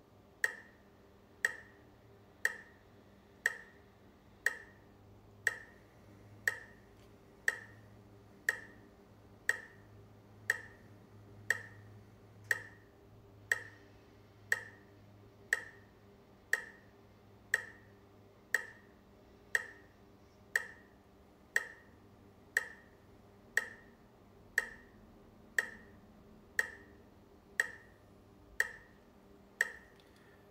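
Metronome clicking steadily about once a second, counting out slow inhales and exhales of five or six clicks each.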